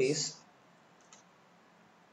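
A man's voice ends a word, then a single faint click about a second in: a stylus tip tapping a writing tablet.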